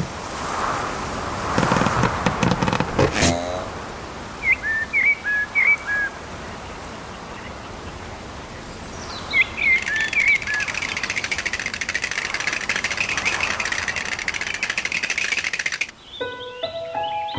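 A small bird chirps in quick, repeated short phrases, in two bouts, over outdoor ambience. A steady high buzz takes over for the second half. Near the start, a rustle ends in a sharp snap with a short falling squeak.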